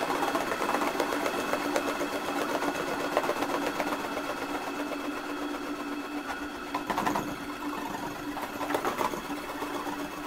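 Noise music made from modified recordings of found instruments: a dense, rapid mechanical clatter over a steady droning tone, with louder rattling bursts about seven and nine seconds in.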